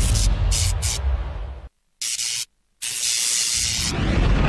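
Sound effects of a TV show's animated logo sting: a heavy low rumble that dies away, then after a moment of silence a short burst of hissing, a brief gap, and a longer hiss.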